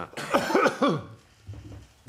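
A person coughing, one short fit in the first second.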